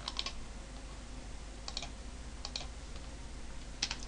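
Computer keyboard keystrokes, a few scattered taps: a couple near the start, a pair a little before halfway, another pair past halfway and one near the end. A faint steady low hum lies under them.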